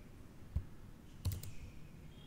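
Keystrokes on a computer keyboard: a soft tap about half a second in, then a quick run of two or three sharp key clicks a little past the middle.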